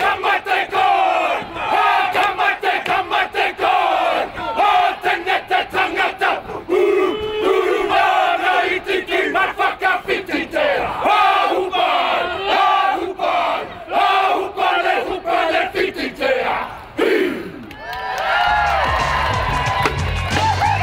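A group of men performing a haka: loud shouted chant in unison, punctuated by sharp rhythmic slaps and stamps. Near the end the chant gives way to music with a bass line.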